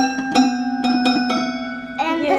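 A child's toy piano played one note at a time with one finger: four or five single notes picked out unevenly, each ringing on.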